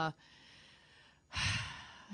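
A woman's audible sigh, breathed out into a close microphone about one and a half seconds in and fading away, after the tail of a drawn-out 'uh' and a faint breath.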